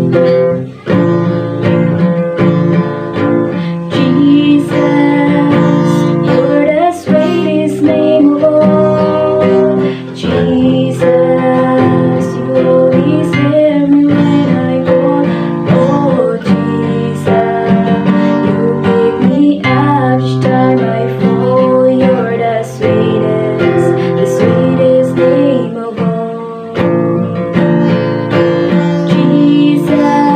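A woman singing a slow worship song to her own strummed acoustic guitar. The guitar plays alone at first, and her voice comes in a few seconds in and carries the melody to the end.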